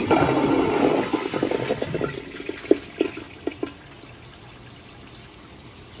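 A 2013 American Standard Glenwall toilet flushing: a sudden loud rush of water that fades over about two seconds, a few gurgles near the middle, then a low, quiet trickle. The flush fails to clear a washcloth wrapped in a grocery bag.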